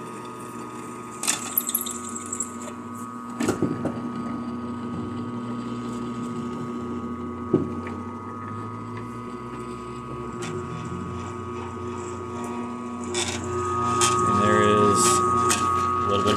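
Harbor Freight drill press running with a steady motor hum and whine while a bit drills a clamped metal plate; the motor is not labouring. A few sharp clicks come in the first half, and over the last few seconds the cutting grows louder with a high squeal.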